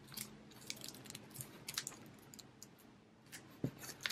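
Faint crinkles and soft ticks of a clear plastic sleeve being folded shut and sealed with a strip of washi tape.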